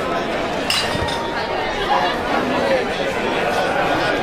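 Spectators chattering around the ground, with a single sharp clink that rings briefly less than a second in.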